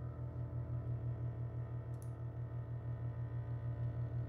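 A sustained low chord on a Hammond organ, pulsing evenly about five times a second, with steady overtones held above it. A brief faint high click comes about halfway through.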